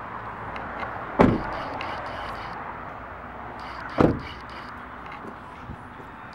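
Two car door slams on a 2008 Scion xB, about three seconds apart, over steady background noise.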